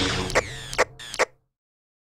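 End of a logo-animation sound effect: a fading music tail with three sharp mechanical clicks, like a ratchet or dial, about 0.4 s apart. The sound cuts off suddenly about a second and a half in.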